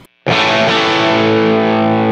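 Electric guitar (a 2002 Gibson Les Paul Standard DC) on its bridge Seymour Duncan P-Rails pickup with P-90 and rail coils in parallel, played through a Line 6 Helix WhoWatt amp model. One chord is struck about a quarter second in and left to ring steadily.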